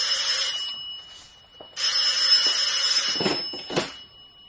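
Telephone bell ringing twice, each ring loud and about a second long or more with a short pause between, followed by a couple of short knocks near the end as the receiver is picked up.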